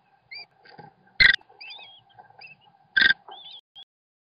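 American kestrel nestlings begging during a feeding, a string of thin chirps and squeals that bend up and down in pitch, broken by two short, loud, harsh bursts close to the microphone a little under two seconds apart.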